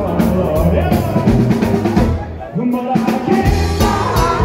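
Live rock and roll band playing, with drums and electric guitar; the music drops out briefly about two seconds in, then the band comes back in.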